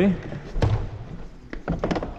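A few short plastic knocks and thumps from the removed plastic door panel being handled against the car door: one about half a second in and two close together near the end.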